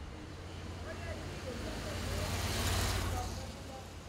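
A road vehicle passing along the street, its rumble and tyre noise swelling to a peak just under three seconds in and then fading away.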